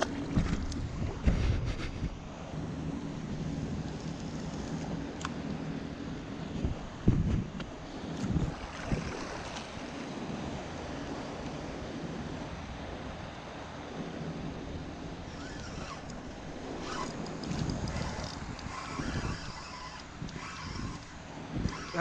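Wind blowing on the microphone over choppy sea water, with waves lapping against a plastic fishing kayak. A few louder low gusts or thumps come near the start and about seven to eight seconds in.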